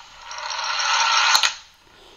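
A small lab cart rolling along a track, pulled by a weight falling on a string over a pulley. The rolling rattle grows steadily louder as the cart speeds up, then ends with two sharp knocks after about a second and a half.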